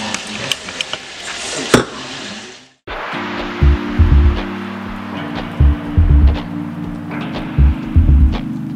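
Chicken frying in a pan, sizzling and crackling, until it fades out near the three-second mark. Then background music with a heavy bass beat.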